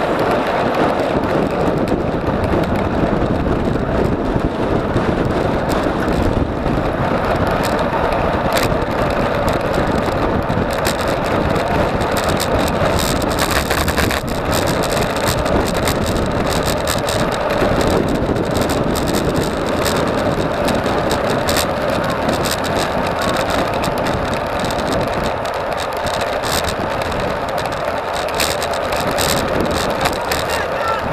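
Steady wind rush and tyre-on-asphalt noise from a road bike riding at race speed, picked up by a bike-mounted camera's microphone, with scattered light clicks and rattles.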